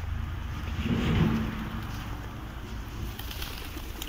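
Outdoor rumble of wind on the microphone around a flock of feral pigeons, with a low steady tone swelling about a second in and fading away.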